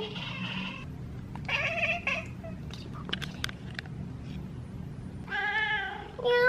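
House cat chirping at a bug on the window: a few short calls, then a longer meow near the end.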